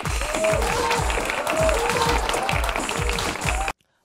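The show's title theme music, with a heavy bass beat about twice a second and a melody over it, cutting off suddenly just before the end.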